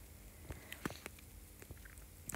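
Faint mouth clicks and lip smacks close to the microphone, a handful of short ticks in the second second, just before speech begins.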